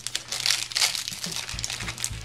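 Paper and plastic packaging crinkling irregularly as beauty-box items are handled.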